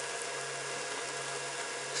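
Slices of Spam sizzling steadily in spray oil in a cast-iron skillet, with a faint steady low hum underneath.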